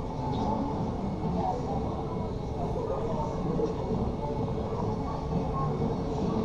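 Dark-ride car running steadily along its track: a continuous low rumble with a faint steady hum.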